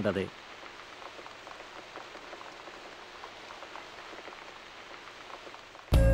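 Light rain falling steadily, with faint scattered drop ticks. Music starts suddenly just before the end.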